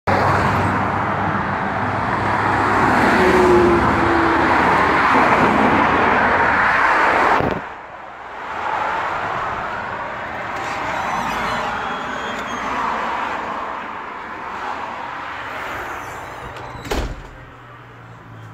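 Loud street traffic noise that cuts off suddenly about seven and a half seconds in, leaving a quieter steady background noise with a single sharp click near the end.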